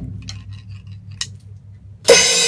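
A few light, sharp clicks and taps of wooden drumsticks being handled at a drum kit between strokes, over a low steady hum.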